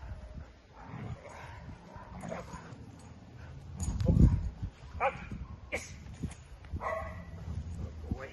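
A dog giving short yips and whines while it plays tug on a toy, with a brief, loud, low rumble about halfway through.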